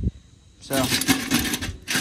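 Steel foothold traps and their chains clinking and rattling against each other and the metal pot as they are handled, starting about half a second in.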